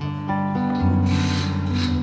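Acoustic guitar letting the closing chords of a song ring out, with a low bass note struck about a second in. Clapping starts around the middle and builds under the ringing chord.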